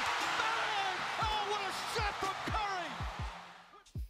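Basketball game broadcast audio: a loud arena crowd with a commentator's voice over it, fading out in the last second.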